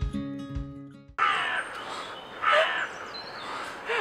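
Strummed acoustic guitar music that cuts off about a second in, followed by a steady outdoor hiss with a bird calling twice, two short harsh calls a little over a second apart.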